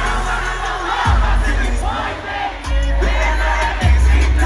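Live hip-hop concert music over an arena sound system, with deep 808 bass notes that slide downward as they come in, three times. A large crowd sings and shouts along over it.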